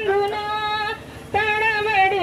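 A woman singing long, high held notes, with a short break about a second in before the voice comes back.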